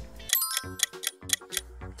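Clock-ticking sound effect: a quick run of ticks, about five a second, lasting a little over a second, marking the passing of time. Background music plays under it.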